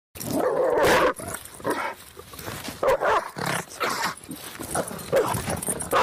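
Dog barking and growling: a long, wavering growl-bark in the first second, then a string of shorter barks.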